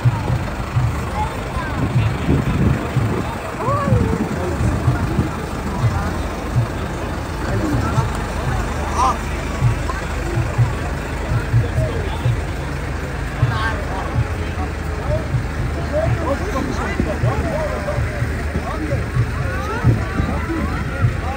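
A tractor engine running steadily close by, a low rumble under a mix of people talking and calling out.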